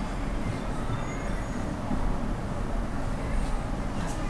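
Steady low rumble of road traffic, with a few faint, brief high squeals.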